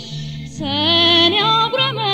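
Ethiopian pop song from a 1980s cassette: a woman's voice comes in about half a second in with a wavering, ornamented melody over a bass line that moves between held notes.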